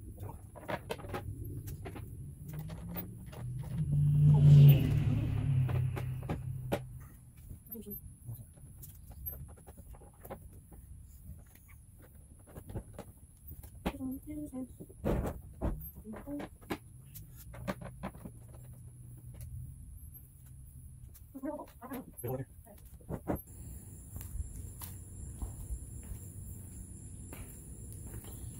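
Small metal bolts and wing nuts clicking and tapping as they are picked up off concrete and fitted through the bolt holes around the rim of a plastic feeder hopper, in scattered light clicks. A louder low rumble swells about four seconds in and fades out a few seconds later.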